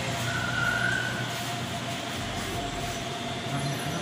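Steady shop background noise: a constant hum with a faint held tone under it, and a short higher tone lasting about a second near the start.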